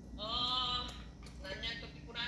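A young child's high-pitched, wordless squeal, drawn out for under a second, followed by a shorter vocal sound about a second and a half in.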